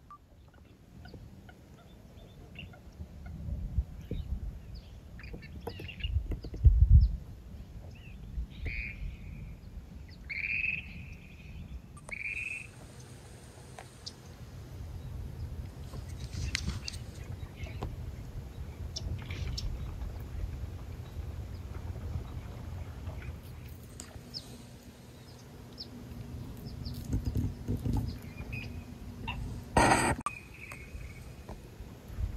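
Low rumbling noise of wind and handling on the microphone, with a loud bump about seven seconds in. A bird gives three short calls between about nine and thirteen seconds in.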